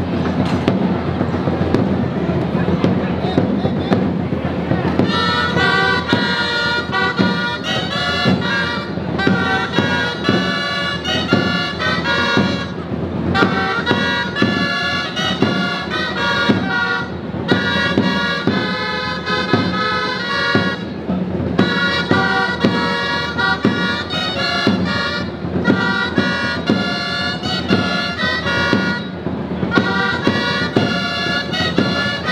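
Traditional Catalan street-band music for a festival beast's dance: reedy gralles (shawms) take up a loud tune about five seconds in, phrase after phrase, over a steady drum beat. Before the tune starts, drumming sounds under the hiss of hand-held fireworks.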